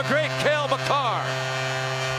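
A man's voice for about the first second, over a steady electrical hum that continues alone after the voice stops.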